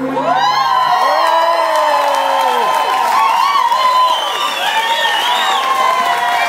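Audience cheering, whooping and clapping at the end of a live song, with the band's final low note dying away about a second in.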